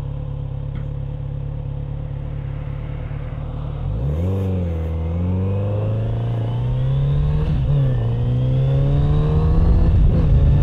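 Kawasaki Z900RS Cafe's inline-four engine running steadily, then pulling hard about four seconds in, its pitch climbing as the bike accelerates. The pitch dips briefly at gear changes, once just after the pull begins and again about eight seconds in.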